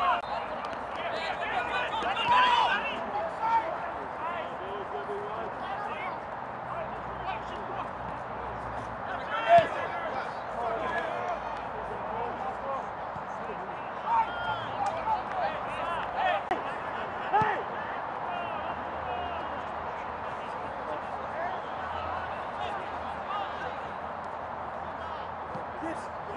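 Players on a football pitch shouting short calls to each other over steady open-air background noise, with a few sharp thumps of the ball being kicked, the loudest about nine and a half seconds in.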